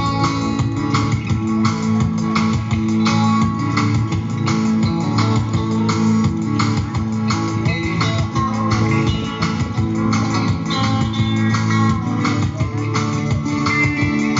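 A small live band of guitars playing an instrumental passage: strummed guitars keeping a steady rhythm over held chords, without singing.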